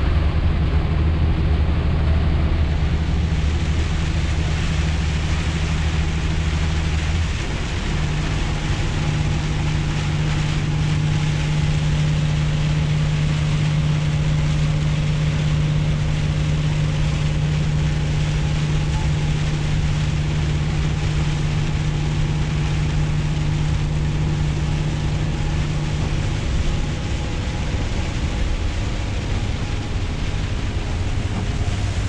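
Lorry engine running at motorway speed, heard inside the cab, over steady tyre, road and rain noise from driving on a soaking wet road. The low engine drone changes note about seven seconds in.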